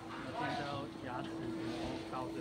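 Indistinct voices talking in the background over a steady hum.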